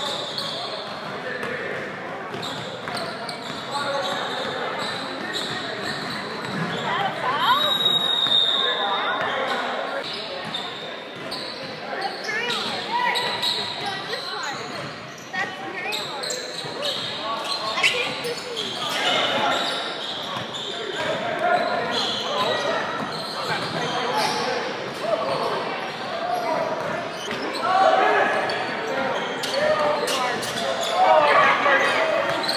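Basketball game in a gymnasium: the ball bouncing on the hardwood floor amid indistinct voices of players and spectators, echoing around the large hall.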